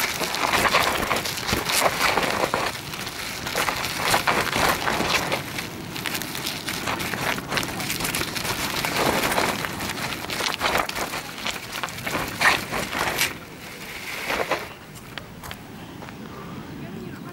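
Bicycle tyres crunching over loose gravel and black volcanic sand, a dense crackle of grit under the wheels, which keep sliding in the soft sand. The crunching grows quieter near the end.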